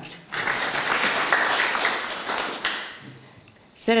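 Audience applauding briefly, the clapping dying away after about three seconds.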